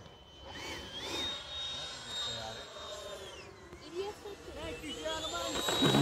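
High whine of a radio-controlled Freewing F-22 model jet's electric ducted fans. The pitch climbs and holds high, drops away about three and a half seconds in, then climbs again as the throttle is worked.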